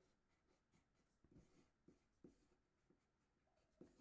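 Very faint pencil scratching on paper: several short strokes as capital letters are written by hand.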